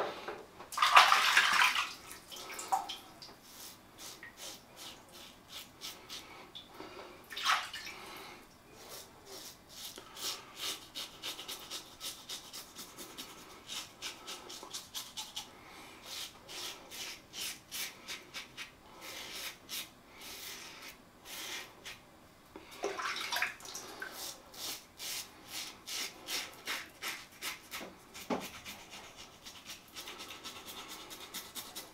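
Tatara Masamune titanium safety razor scraping through stubble under shaving lather in many short, quick strokes. A burst of running water comes about a second in, and again at about two-thirds through.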